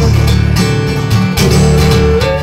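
Two acoustic guitars strummed live, playing a folk-style song accompaniment in a pub room.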